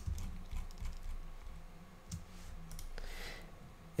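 Faint, scattered clicks of a computer keyboard and mouse, with a low hum underneath.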